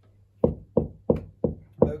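Knuckles rapping five times on a wooden door in an even rhythm, about three knocks a second.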